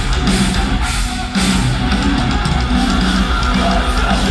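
Live heavy rock band playing loud, with distorted electric guitars, bass and drum kit, heard from within the crowd. The music cuts out briefly about a second in, then comes back in.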